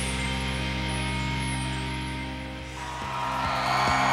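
Television sports broadcast theme music ending on a sustained chord that fades out between two and three seconds in. Crowd noise from the stadium rises in near the end.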